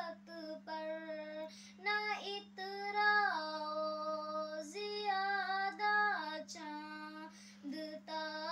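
A young girl singing a Hindi poem unaccompanied, in long held notes that slide between pitches with short breaths between phrases. A steady low hum runs underneath.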